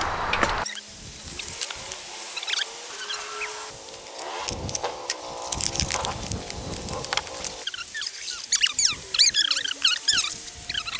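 Packaging being pulled off a folding e-bike's frame: irregular crackling and rustling of foam and paper wrap. Several high chirps come in near the end.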